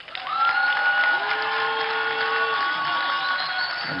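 Audience applauding and cheering, with several long, steady, high-pitched notes held over the noise of the crowd.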